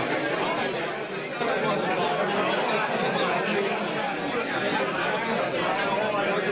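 Crowd chatter: many people talking at once, at a steady level.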